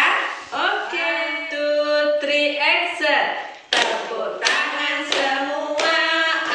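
Women's voices singing an unaccompanied children's action song, with long held notes, joined in the second half by four sharp hand claps evenly spaced, a little under a second apart.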